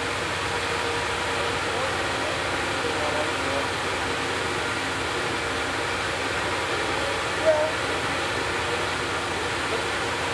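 Steady running noise of an Amtrak passenger train standing at a station during a brief stop, an even hum and hiss, with faint distant voices from the platform and one short louder sound about seven and a half seconds in.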